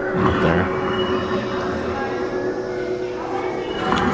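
Indistinct background voices over a steady hum.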